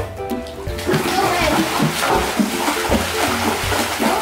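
Water splashing and churning as a child kicks in a swimming pool, starting about a second in, over background music.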